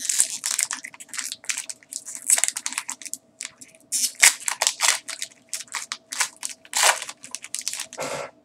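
A trading-card booster pack's foil wrapper crinkling and tearing as it is opened by hand: a dense run of irregular crackles, with a couple of short pauses.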